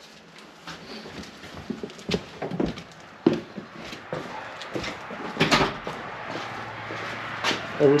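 Footsteps with scattered knocks and scuffs at irregular intervals, as someone walks and handles things, with the loudest knock about five and a half seconds in.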